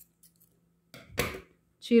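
Scissors snipping through a strand of cotton crochet twine, one cut about a second in, after a few faint clicks of the blades.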